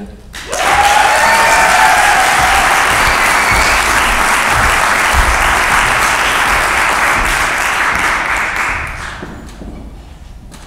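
Audience applauding after a talk: clapping starts about half a second in, holds steady and dies away near the end. A single voice cheers with a drawn-out pitched whoop over it about a second in.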